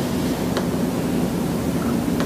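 Steady background hiss with a low hum, and one faint click about half a second in from a laptop being clicked.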